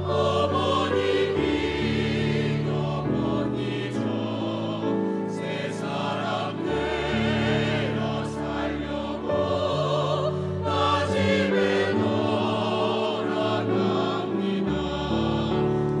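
Mixed church choir singing a Korean hymn in parts, the voices wavering with vibrato over deep held notes that change every couple of seconds.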